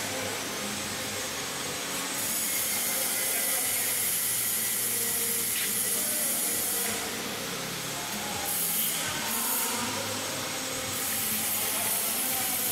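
Steady noise of running machinery, a continuous mechanical hum with a strong high hiss.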